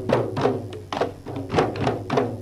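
Manipuri dhol barrel drums beaten in a fast, driving rhythm for the dhol cholom drum dance: sharp, ringing strokes, about five a second.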